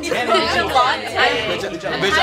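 Several people talking over one another in a lively group chatter.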